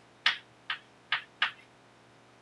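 Chalk writing on a blackboard: four short, sharp chalk strokes tapping against the board, a few tenths of a second apart.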